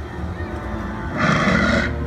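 Stage-show soundtrack music from the loudspeakers during a lightsaber duel, with a brief loud noisy burst lasting under a second, a little past a second in.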